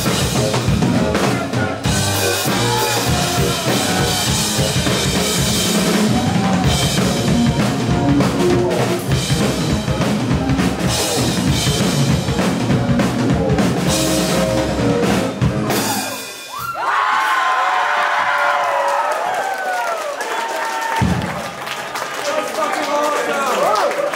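Drum kit played solo: a dense run of kick drum, snare and cymbal strokes that stops about two-thirds of the way through. Then voices cheer and whoop, with one more drum hit a few seconds later.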